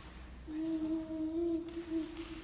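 A person humming one steady, slightly wavering note that starts about half a second in.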